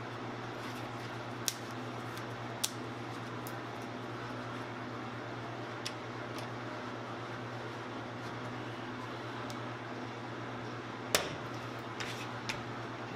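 A few short, sharp clicks and knocks of pine boards and a bar clamp being handled, the loudest near the end, over a steady low hum.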